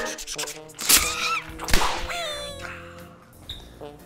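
Short animated-logo intro sting made of sound effects. It opens with a quick run of clicks and a sharp whoosh-hit about a second in. Short wavering cartoon-like calls follow, then a held note that fades away.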